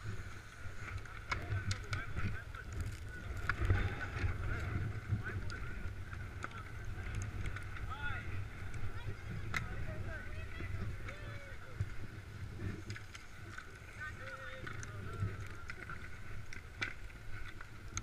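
Wind rumbling on a head-mounted camera's microphone, with faint distant voices and a few isolated clicks.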